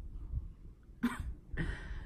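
A person's short breathy laugh: two brief exhaled bursts, one about a second in and a softer one just after.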